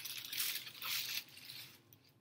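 Tissue paper rustling and crinkling as a honeycomb paper decoration is folded closed, fading out near the end.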